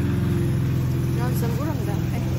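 Small petrol lawn mower engine running steadily, a low, even drone.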